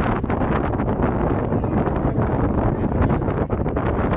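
Wind buffeting the camera microphone on an open ferry deck: a loud, steady, gusty rumble.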